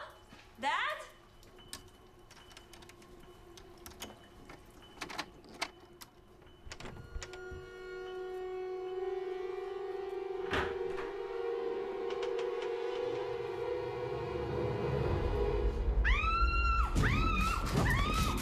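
Film soundtrack: a woman calls out twice at the start, then a quiet room with a few faint knocks. A held suspense-music drone swells from about seven seconds in, joined by a deep rumble and then a burst of sharp, wavering high sounds near the end.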